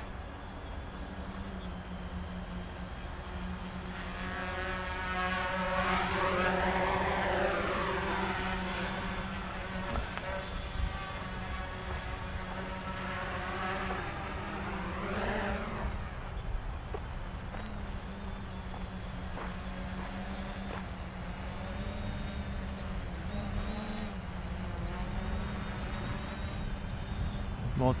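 Small quadcopter's electric motors and propellers buzzing steadily, the pitch of the whine swelling up and falling back twice, around five seconds in and again around fourteen seconds in, as the throttle changes or the quad passes by.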